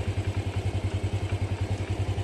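Honda Wave 100's single-cylinder four-stroke engine idling steadily, with an even, rapid exhaust pulse of roughly a dozen beats a second.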